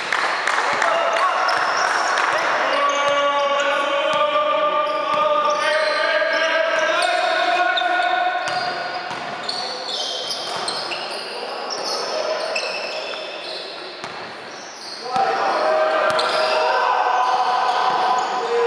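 Basketball game sounds on an indoor court: the ball bouncing, high sneaker squeaks and players' voices calling out, echoing around a large gym hall. The sound drops off for a few seconds past the middle, then picks up again near the end.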